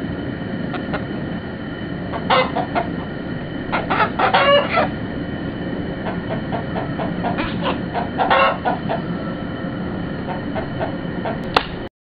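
Chickens calling and clucking in three short bursts over steady outdoor background noise; the sound cuts off abruptly near the end.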